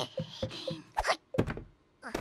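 Cartoon sound effects of quick, light hopping steps, about four a second, followed by two sharper, louder knocks.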